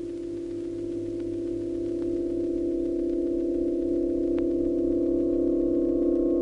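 Soundtrack drone: a low sustained tone with a fainter higher tone above it, swelling slowly louder. Near the end a third, higher tone comes in, and a few faint clicks lie over it.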